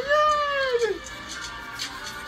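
A man's drawn-out, high-pitched wordless exclamation, a held squeal-like "ooh" that bends down in pitch and breaks off about a second in, over music.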